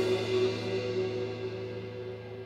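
A live band's last chord at the end of a song, electric guitar and bass held and slowly dying away.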